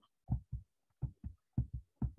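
About six short, soft low thumps at an uneven pace, some in close pairs.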